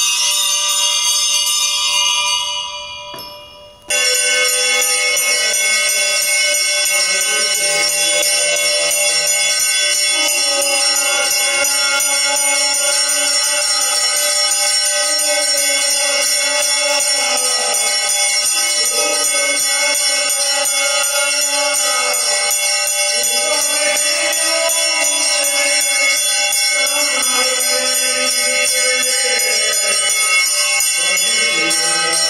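Bells ringing continuously over devotional music with a moving melody, accompanying the lamp-waving aarti at a Hindu shrine. The sound fades out about two seconds in and cuts back in abruptly at about four seconds.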